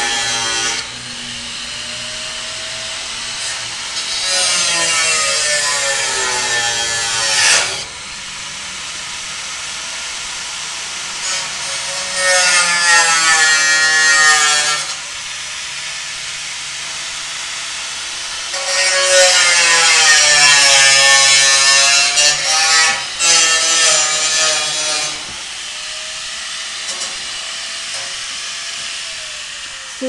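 Angle grinder cutting steel tubing in three long passes, its whine sagging in pitch as the disc bites and recovering as it eases off. Between the cuts it keeps running more quietly.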